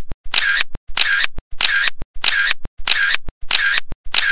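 Camera shutter sound repeating in an even rhythm, about every two-thirds of a second. Each is a half-second shutter noise ending in a short click.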